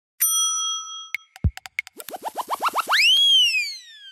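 Cartoon-style transition sound effects. A bell-like ding rings for about a second, then come a few quick clicks and a low thump. After that, a run of rising chirps speeds up into one long swooping tone that rises and then falls away.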